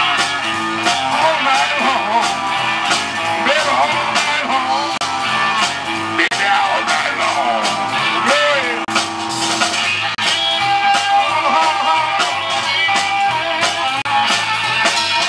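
Live blues band playing an instrumental break between verses: an amplified harmonica leads with bending, wavering notes over electric guitar, bass, drums and keyboard.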